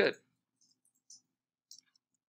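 Faint, short computer clicks in a quiet room, most likely from the mouse or keyboard: one about a second in and two close together near the end. The tail of a spoken word comes just before them.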